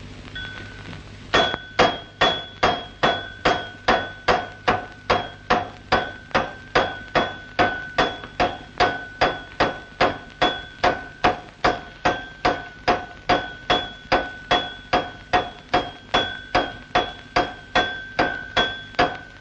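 A pestle pounding steadily in a mortar, a little over two strokes a second. It starts about a second and a half in, and each stroke is a sharp knock that rings on with a clear tone.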